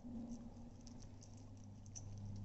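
Corgi puppy licking and gnawing a raw chicken leg: faint, scattered wet clicks and smacks over a steady low hum.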